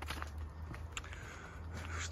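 Footsteps of a person walking on a narrow path: a few soft, irregular steps over a steady low background noise.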